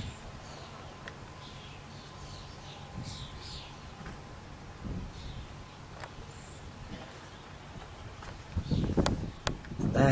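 Quiet outdoor background: a low steady noise with a few faint, high, short chirps in the first half. Louder rustling and a couple of clicks come near the end.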